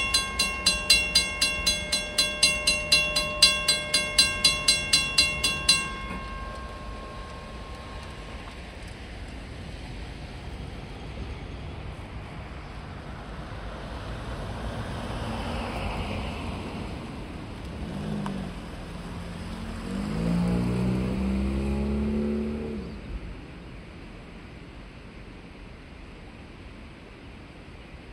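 Railroad grade-crossing bell ringing at about three strikes a second, stopping about six seconds in. Then road vehicles pass over the crossing, the loudest a little after twenty seconds.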